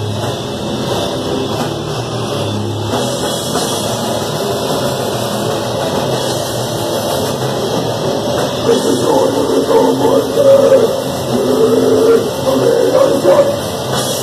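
Crust punk band playing live: distorted electric guitar, bass guitar and drum kit, a dense, loud wall of sound that grows louder and busier about two-thirds of the way in.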